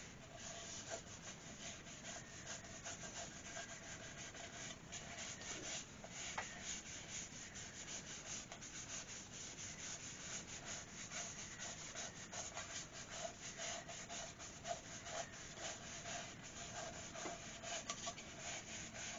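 A hand rubbing sanding sealer into the smooth surface of an ash bowl on the lathe: a quiet, continuous, scratchy rubbing of skin on wood. A faint steady hum sits underneath.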